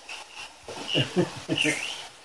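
Quiet voice sounds, a person murmuring a few short syllables about halfway through, with a few faint, brief high chirps.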